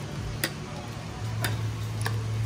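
Metal fork clinking against a ceramic plate while noodles are stirred and mixed: a few sharp clicks about a second apart, over a steady low hum.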